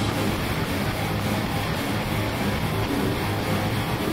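Live heavy metal band playing loud and steady: distorted electric guitars, bass and drums, in a poor-quality concert recording.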